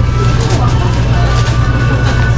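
Supermarket ambience: a steady low rumble with faint steady tones above it, and no clear speech.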